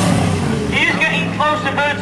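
Motorcycle engine running low and steady under a man's voice over the public address, the voice starting under a second in and carrying on.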